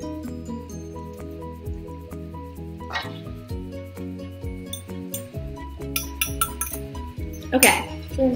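Background music with short, evenly pitched notes over a steady bass. A metal spoon clinks against a glass measuring jug and a stainless steel bowl a few times, once about three seconds in and several more in the second half, as egg and milk are scraped out of the jug.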